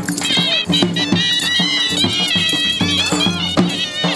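Live Punjabi folk music: a dhol drum beats a steady rhythm under a high, wavering piping melody, over a steady low drone that drops out briefly near the end.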